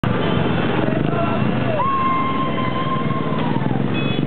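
Several motorcycle and small scooter engines running together. A long high tone cuts through, sliding up, held for about two seconds, then sliding down near the end.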